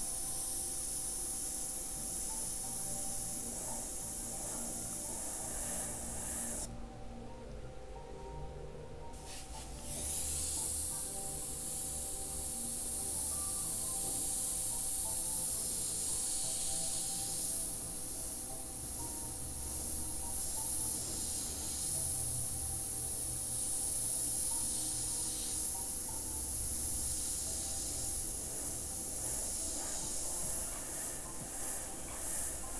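Airbrush spraying paint: a steady high hiss of compressed air that stops for about two and a half seconds some seven seconds in, when the trigger is let off, then starts again.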